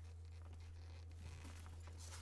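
A faint steady low hum with soft rustling of nylon straps and padded fabric as goalie leg pads are handled.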